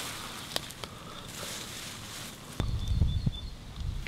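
Low leafy ground cover rustling, with a few light clicks, as hands pick wild strawberries from among the plants. About two-thirds of the way through, a low rumble comes in.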